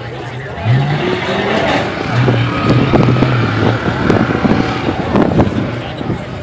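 Ultra4 off-road race car's engine revving as it climbs a boulder hill: the pitch rises about a second in, then holds a steady drone through the middle, with scattered clicks and knocks along the way.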